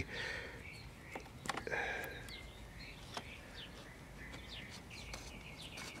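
Faint background with scattered short bird chirps and a few light clicks.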